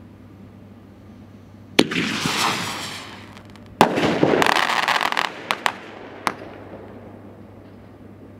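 Single-shot aerial firework shell: a sharp launch bang about two seconds in, followed by a fading hiss as it rises. The shell bursts with a loud report about two seconds later, followed by a second or so of dense noisy rush and then a few separate sharp pops.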